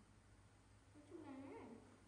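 A baby macaque gives one faint, short call a little past a second in, its pitch dipping and then rising.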